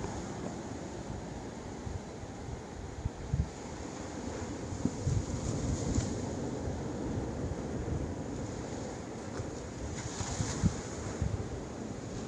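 Ocean surf washing steadily onto the beach, with wind gusting irregularly on the microphone.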